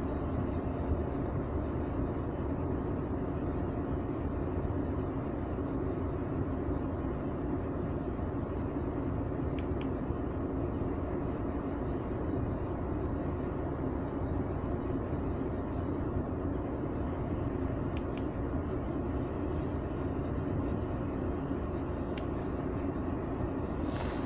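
Mercedes-Benz Actros 2040 truck's diesel engine idling steadily in neutral, heard from inside the cab. A couple of faint ticks come about ten and eighteen seconds in.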